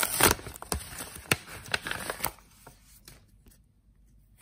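Paper envelope rustling and crinkling as hands open it and pull out a trading card: a burst of noise right at the start, then scattered crackles that die away a little after two seconds.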